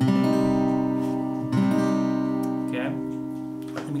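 Crafter acoustic guitar strumming an A minor chord shape with a capo on the third fret: struck twice, at the start and about a second and a half in, the chord ringing on and slowly fading.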